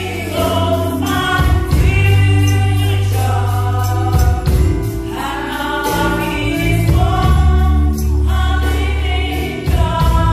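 Two women singing a gospel song into microphones in long held notes, over an accompaniment of held bass notes and a steady, evenly ticking high percussion beat.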